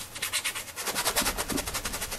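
Paintbrush scrubbing acrylic paint onto canvas: a fast, even run of scratchy ticks, over a dozen a second.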